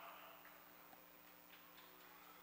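Near silence: a faint steady low hum with a few faint, scattered clicks.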